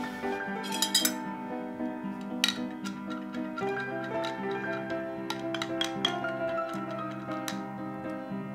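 Soft piano background music, with ice clinking against the side of a glass as an iced latte is stirred: a few clinks early on, then a quicker run of clinks in the second half.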